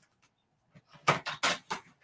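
A quick cluster of four or five sharp clicks and taps about a second in: hands picking up and handling a plastic cut-and-emboss folder and cardstock on a craft mat.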